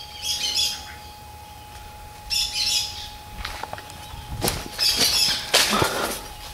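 A bird giving short, high calls about every two and a half seconds. In the second half come crackling steps on dry leaves and rubble.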